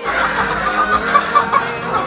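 Caged gamefowl roosters clucking, with a quick run of short clucks a little past the middle, over a busy din of other birds in the pen.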